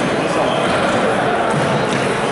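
Table tennis ball being hit back and forth in a rally, with a sharp click of the ball off a paddle near the end, over steady voices and chatter echoing in a gym hall.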